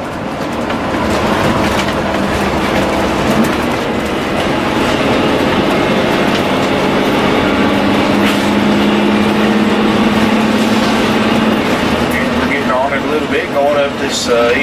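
Inside the cab of a 2005 Country Coach Inspire motorhome accelerating up an interstate on-ramp: its 400-horsepower Caterpillar diesel working under load with steady road and tyre noise, growing louder over the first couple of seconds and then holding steady. A low hum holds for a few seconds past the middle, and a man's voice comes in near the end.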